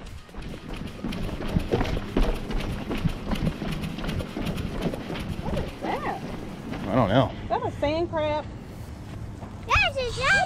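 Footsteps on the wooden planks of a fishing pier, a steady walking rhythm of knocks, with voices briefly in the second half.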